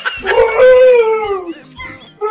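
A long, high-pitched, howl-like vocal wail that slides slowly down in pitch for over a second, followed near the end by a few short yelps.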